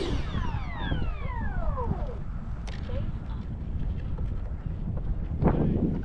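A 50 mm electric ducted fan winding down after a brief throttle run, its whine falling in pitch over about two seconds. Wind buffets the microphone throughout, and there is a short rush of noise about five and a half seconds in.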